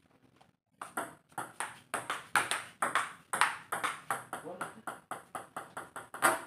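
Table tennis ball in a fast rally, hitting bats and table in a quick train of sharp clicks, about four to five a second, starting about a second in.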